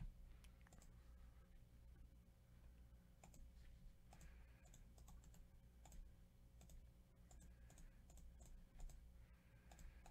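Near silence: faint, scattered clicks of a computer mouse and keyboard over a low steady hum.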